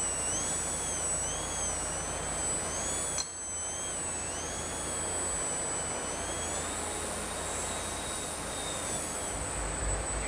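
Electric motor and propeller of a small Turnigy Piaget RC aerobatic plane whining in flight, the pitch wavering up and down as the throttle is worked, over a constant background hiss. About three seconds in it drops out briefly, and in the second half it rises to a higher, steadier pitch.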